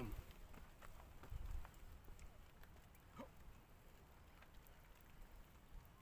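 Near silence, with faint scuffs and taps of shoes on bare rock as a person climbs boulders. One faint, short rising call comes about three seconds in.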